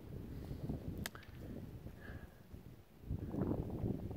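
Wind buffeting the microphone, with a sharp click about a second in and a louder gust near the end.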